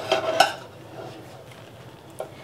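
Metal slotted spatula knocking and scraping against a frying pan while an omelette is folded over: two sharp clicks in the first half second, then only faint scraping.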